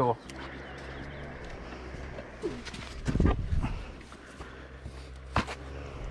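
Dirt bike engine idling steadily. There is a louder low rumble about three seconds in and a sharp click near the end.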